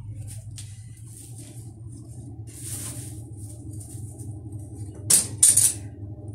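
Wool yarn being handled, giving soft scattered rustles and brushing, with two louder rustles near the end as a ball of wool passes close to the microphone. A steady low hum runs underneath.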